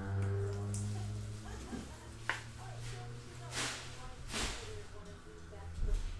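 Trading cards handled and slid over one another: a sharp click about two seconds in, then two brief swishes.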